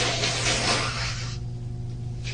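A woman breathing loudly into a tissue held over her nose and mouth, a rushing sound that stops about halfway through. A steady low electrical hum runs underneath.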